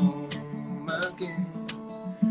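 Steel-string acoustic guitar fingerpicked, a run of plucked notes with crisp, sharp attacks over ringing bass notes.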